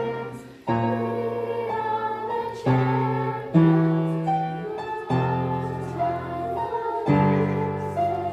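Upright piano played solo: full chords with deep bass notes, each struck afresh about every one to two seconds and left to ring.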